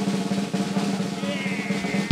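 A fast, steady snare drum roll played on a drum kit.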